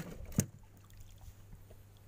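Two knocks on a small boat, the second sharper and a little before half a second in, followed by a faint steady low hum.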